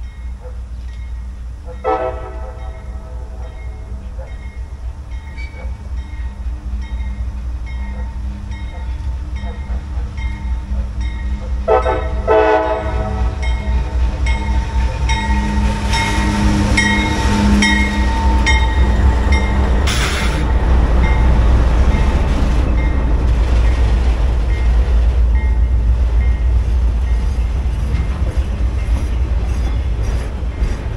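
Diesel-hauled CSX work train passing close by: the locomotive horn sounds twice, about ten seconds apart, over the low diesel rumble. The rumble grows louder as the locomotives go by and the flatcars of track-maintenance machines roll past.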